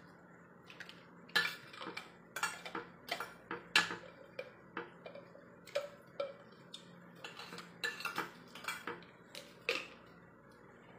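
Metal fork and spoon clinking and scraping against ceramic plates in irregular, sharp clicks.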